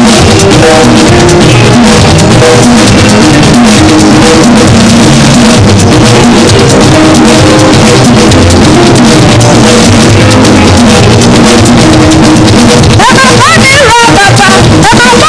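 Live church praise-band music with a drum kit playing a steady beat, loud and unbroken. Near the end a voice comes in over the band.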